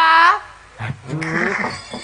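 A man's voice through a stage microphone: a held, high call breaks off just after the start, then a low, rough, drawn-out vocal sound with wavering pitch lasts about a second.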